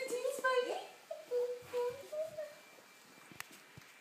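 A baby's wordless voice: a short vocal sound at the start, then a few brief babbles or coos, going quiet in the second half. A single small click comes near the end.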